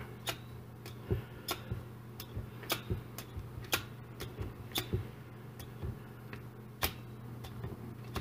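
Needle meat tenderizer pressed repeatedly into a raw ribeye steak on a plastic sheet, making sharp, irregular clicks about one to two a second.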